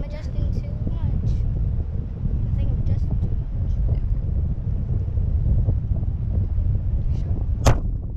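Wind buffeting the microphone of a camera hanging under a parasail: a steady, gusting low rumble, with one sharp knock near the end.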